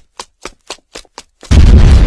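Title-animation sound effects: a quick run of short, sharp gunfire-like cracks, about one every fifth of a second, then, about one and a half seconds in, a sudden loud, deep explosion boom that begins to die away.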